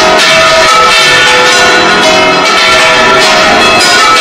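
Church tower bells ringing loudly, several bells struck one after another so that their tones overlap and ring on.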